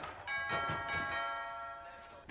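Doorbell chime ringing: several bell tones start together and fade slowly over about a second and a half.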